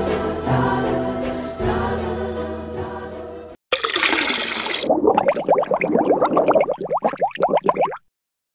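Background music with choral singing that cuts off about three and a half seconds in. It is followed by a cartoon water splash and then a rapid run of bubbling pops, each rising in pitch, from an animated logo sting.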